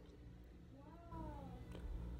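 A faint animal call that rises and then falls in pitch, starting about half a second in and lasting about a second.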